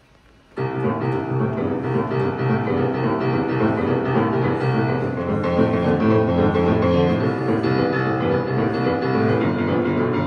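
Grand piano played solo in a fast boogie-woogie style. It starts abruptly about half a second in, then keeps up a dense, steady stream of bass and chords.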